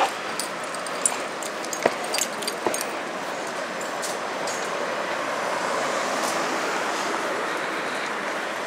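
City street traffic noise, swelling as a vehicle drives past near the middle, with a few short sharp clicks or knocks in the first three seconds.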